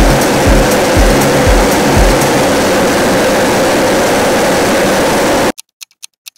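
Hot air balloon's propane burner firing: a loud, steady roar that cuts off suddenly about five and a half seconds in, with a music beat underneath for the first couple of seconds.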